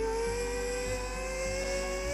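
A child's voice holding one long, slowly rising "eee" note that drops sharply in pitch at the end, over quiet background music.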